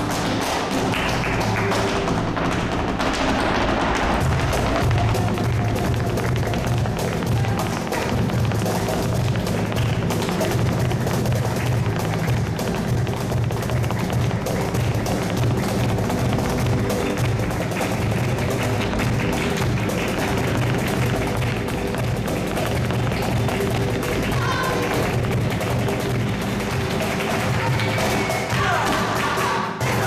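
Flamenco footwork (zapateado): rapid, continuous heel and toe strikes from a dancer's shoes on the floor, with hand-clapping (palmas) keeping the rhythm.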